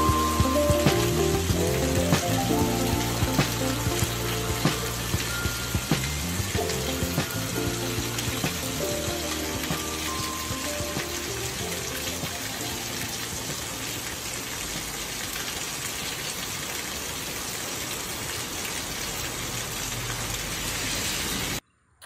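Steady heavy rain, with background music over it that fades out over roughly the first half. The sound cuts off suddenly just before the end.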